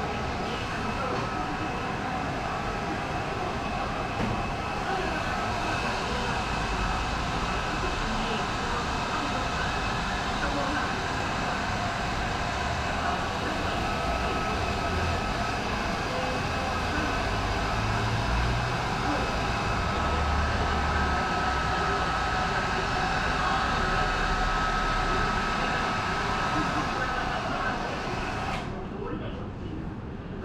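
Hand-held hair dryer blowing steadily during a haircut, a continuous rush of air with a faint motor whine.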